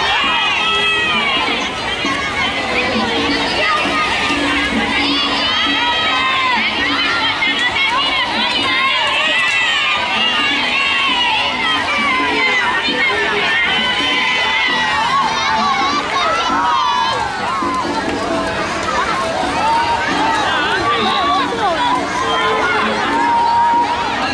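A crowd of children shouting and calling out over one another, many high voices at once, with some cheering.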